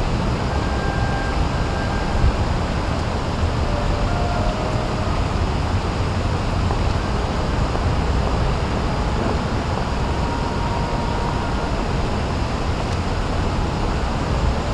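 Steady low rumble of urban traffic noise, even throughout, with no distinct events standing out.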